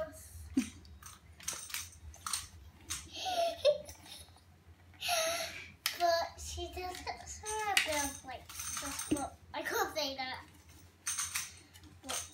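A young girl babbling and vocalising in short broken bits, with scattered light clicks and clinks from the plastic jug she is handling.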